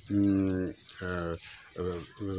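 A steady chorus of crickets, a continuous high trill, under a man's slow, halting speech.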